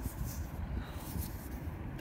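Quiet outdoor background: a low, uneven rumble with faint hiss, and no distinct event.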